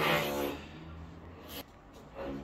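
An electric drill running, loudest for the first half second and then fainter.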